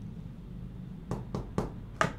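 Three quick, light taps on a whiteboard, about a quarter second apart, starting about a second in, over quiet room tone.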